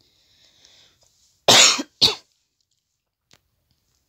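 A woman coughing twice in quick succession, about a second and a half in.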